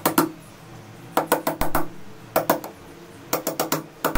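Sharp clicks and light metallic knocks in several short clusters, from car alternator parts and pliers being handled as the alternator's rear case is fitted back on.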